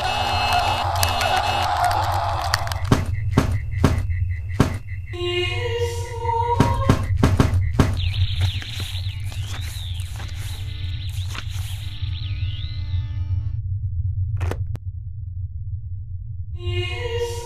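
Animated-film soundtrack: music over a steady low hum. A quick run of sharp clicks from toggle switches comes from about three to seven seconds in, and a wavering high electronic tone runs through the middle.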